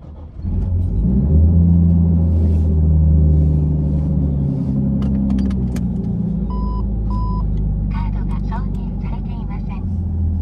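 Nissan R34 Skyline GT-T's turbocharged RB25DET inline-six starting about half a second in, then idling steadily with a slightly raised idle at first. Two short electronic beeps come about midway.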